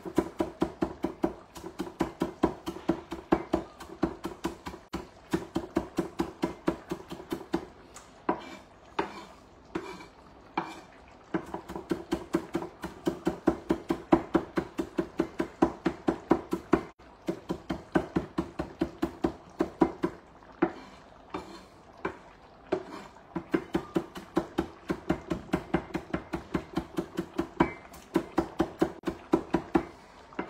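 Kitchen knife chopping fresh parsley on a wooden chopping board: rapid, even knocks of the blade on the wood, about three to four a second, broken by a couple of short pauses.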